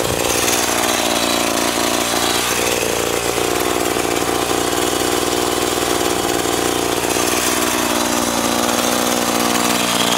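Tanaka TCS 33EB two-stroke chainsaw running steadily, its engine speed drifting slightly up and down.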